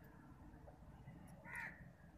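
Faint background with a single short animal call about one and a half seconds in.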